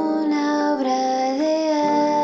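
Recorded pop song: a light female voice sings long held notes that step to a new pitch about every half second, over a soft band backing.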